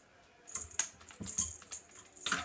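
A cat batting a toy mouse on a string across a wooden floor: several light, irregular clicks and taps.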